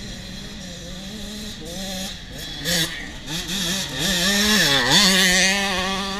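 Several youth mini dirt bikes revving and accelerating hard off the start line. Their engine pitch climbs, with a sudden loud burst about three seconds in, and one bike passes close with a quick dip in pitch about five seconds in.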